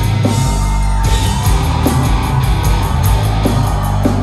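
Heavy metal band playing live at full volume: distorted electric guitars over heavy bass and drums, with a held guitar note ringing above the riff.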